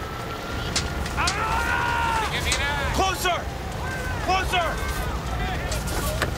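Raised voices shouting long calls across a fire scene, over a steady low rumble.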